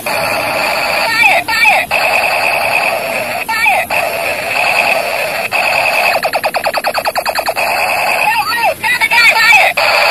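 Electronic firing sound effects from a battery-powered SS1 toy assault rifle: a loud synthetic buzzing tone broken by repeated warbling chirps, with a rapid machine-gun-like stutter of about ten pulses a second lasting a second or so, near the middle.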